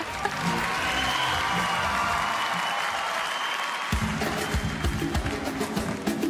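Audience applauding over a held musical tone; about four seconds in, the song's instrumental introduction starts with a steady beat.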